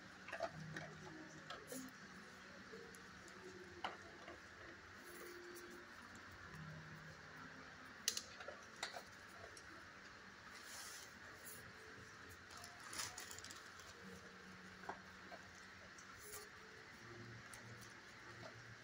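Quiet kennel room tone with sparse, faint ticks and clicks of a dog's claws on the concrete floor as it moves about sniffing, one sharper click about eight seconds in.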